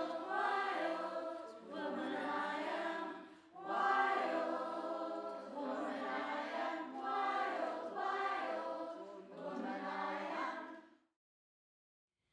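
A choir of female voices singing, in phrases of a couple of seconds each, stopping about eleven seconds in.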